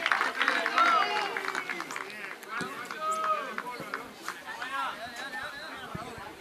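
Several men's voices shouting and calling out across an outdoor football pitch, loudest in the first second and thinning after, with a few short sharp knocks.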